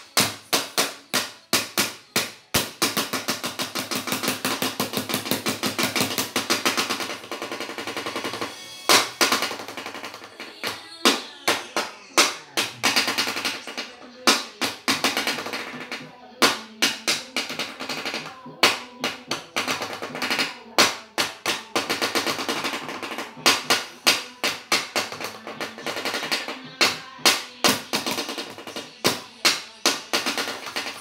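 Wooden drumsticks played very fast on a flat surface. A dense roll for the first several seconds gives way to bursts of hard, rapid hits with short pauses between them.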